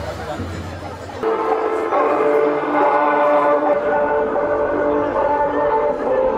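Tibetan Buddhist ceremonial horns start about a second in, playing loud, long held notes that change pitch every second or two, over the voices of a crowd.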